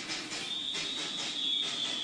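A single high whistling tone, held steady for about a second and a half with a slight drop in pitch near the end, over a faint hiss.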